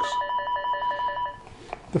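Greenlee 500XP tone probe's speaker playing cable tracing tones: a steady beep together with a rapidly warbling two-pitch tone, until it cuts off partway through, followed by a single click. The probe is still working after being dunked in water.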